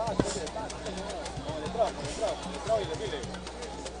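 Faint background voices with music underneath, well below the level of the commentator's speech, with scattered small clicks.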